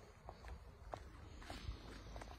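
Faint footsteps on a leaf-littered woodland dirt path: a few soft, irregularly spaced crunches and clicks.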